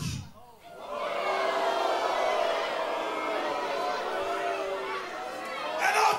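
Wrestling crowd murmuring and chattering, a steady haze of many voices calling out at once. It swells in about a second in, after a brief lull.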